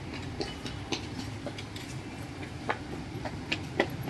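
Outdoor street ambience: a low steady rumble with a handful of irregular sharp clicks, the loudest near the end.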